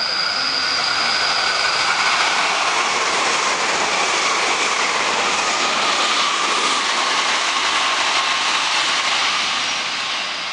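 Meitetsu 1700 series limited express electric train running through a station at speed without stopping: a loud, steady rush of wheels on rail, with a tone that slowly falls in pitch as it goes by. A thin high tone fades away in the first two seconds.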